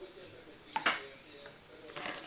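Milk poured from a carton into mugs, with two sharp knocks close together a little under a second in and a lighter click near the end.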